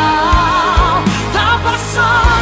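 Female lead vocal singing the chorus of a Portuguese-language gospel pop song, holding a note with vibrato, over a band with bass and a steady kick drum.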